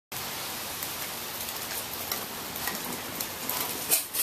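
Steady rainfall, with scattered drops ticking on nearby surfaces. A brief louder clatter comes just before the end.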